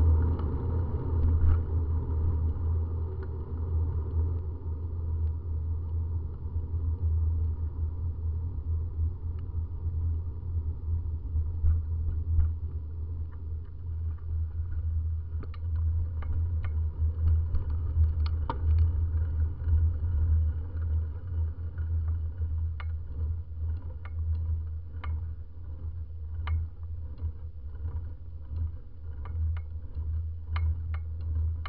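Steady, muffled low rumble of a bicycle being ridden over asphalt, picked up by a camera mounted on the bike: road vibration and wind on the microphone. Sharp clicks and rattles from the bike and mount come more and more often from about halfway through.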